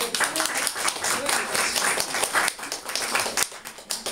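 Audience applauding, many people clapping at once, the applause thinning out near the end.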